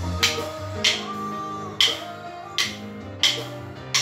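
Wooden drumsticks striking in a drumming workout: six sharp clacks, a little uneven, about two-thirds of a second apart, over a recorded pop song with guitar.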